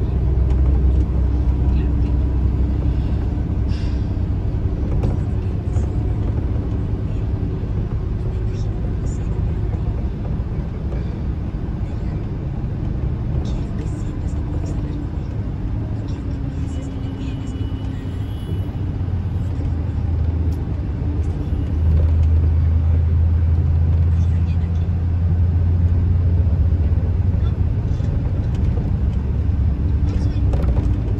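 Steady low engine and road rumble heard inside a vehicle cabin cruising at highway speed; the rumble grows louder about two-thirds of the way through.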